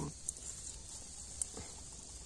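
Faint rustle of hands working through grass and soil at the base of a wild mushroom to pick it, with two small ticks: a light one early on and a sharper one a little past halfway.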